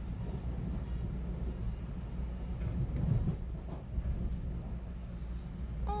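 Steady low rumble, with a few faint soft noises over it.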